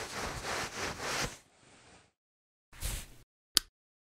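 Towel rubbing over wet hair in a run of quick strokes, stopping about a second and a half in. Near the end comes a short rustle, then a single sharp click.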